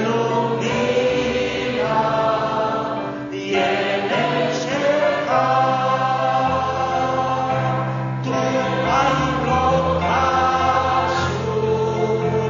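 A group of voices singing a hymn together, the notes changing every second or so over steady, sustained low accompanying notes.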